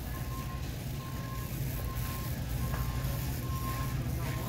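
Electronic warning beeper sounding a single high tone about once a second, each beep under half a second long, over a steady low hum.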